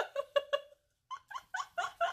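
A young woman laughing in short, high-pitched, breathy bursts. There is a brief pause about a second in, then the laughter starts again.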